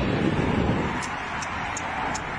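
Steady street noise of traffic with wind rumbling on a phone microphone.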